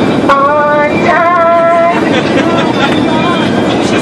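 A voice singing the airline safety instructions with long held notes, over the steady engine hum of the airliner cabin.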